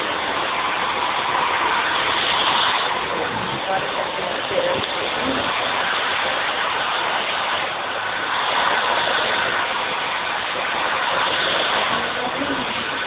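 Handheld hair dryer blowing steadily.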